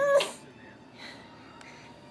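A baby's high squeal on one steady note, cut off about a third of a second in, followed by quiet room tone.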